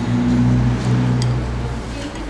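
A low, steady engine hum that dies away shortly before the end.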